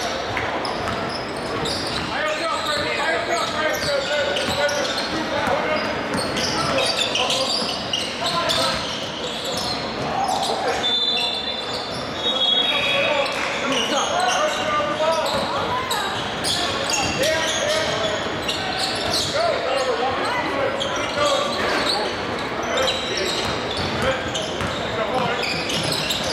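Basketball game in a large gym: a ball dribbling on the hardwood court amid steady, indistinct shouting and chatter from players and onlookers, with a brief high squeal near the middle.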